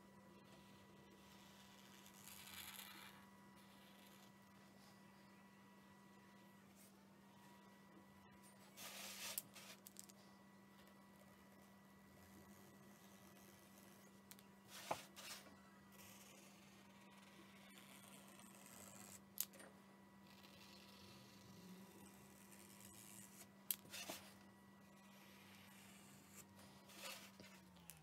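Near silence with a faint steady hum, broken by a few soft scratches and light clicks from a white paint marker outlining a painted wooden cutout.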